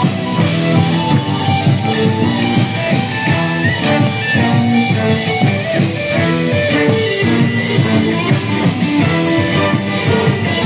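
A live band playing loudly, with saxophones, trombone and trumpet over a drum kit and a steady beat.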